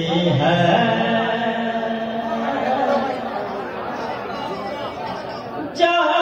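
Male voices in a large hall at a naat recital: a sung note from the reciter dies away into a mix of speaking voices. A single sharp knock comes near the end.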